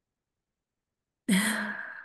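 A woman's audible sigh over a video-call microphone: a breathy exhale with a little voice at its start, beginning about a second and a quarter in, loudest at once and fading over most of a second.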